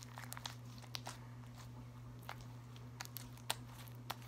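Green slime with lotion worked into it being squeezed and pulled apart by hand, giving scattered faint sticky clicks and pops, the sharpest about three and a half seconds in. A steady low hum runs underneath.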